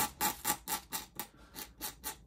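A dip pen's nib scratching across paper in quick, short flicking strokes, about six a second, as strands of hair are inked in.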